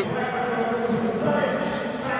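Indistinct men's voices calling and talking in the background over a steady low hum, with no crowd noise.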